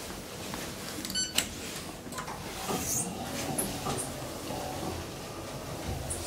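Inside an I.T.K. traction elevator car: a short electronic beep about a second in, followed by scattered clicks and knocks and a low hum of the lift's machinery.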